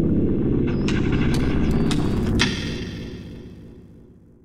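Dark synthesizer trailer score, dense and low, punctuated by a handful of sharp clicks. It ends on a final loud hit about two and a half seconds in, then rings out and fades away.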